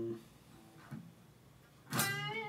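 Electric guitar playing a slow lead lick: a held note dying away at the start, a couple of faint notes in the middle, and a sharply picked note right at the end.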